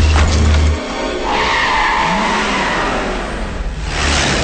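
Car tyres screeching under hard braking, starting a little over a second in and lasting about two and a half seconds, over film music. A deep steady rumble cuts off just before the screech begins.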